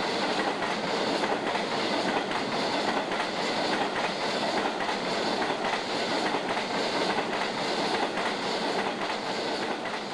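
A long freight train of bogie box wagons rolling past close by: a steady rumble and clatter of wheels on the rails, with regular clicks as the wheels cross the rail joints.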